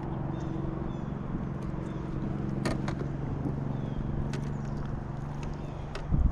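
Steady low motor hum that fades out near the end, with scattered sharp clicks and light knocks.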